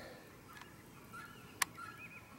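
Faint bird chirps in the background, with one sharp click about one and a half seconds in.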